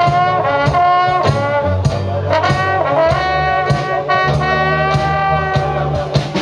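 Traditional jazz band playing an instrumental passage, trombone and trumpet carrying the melody over a steady beat.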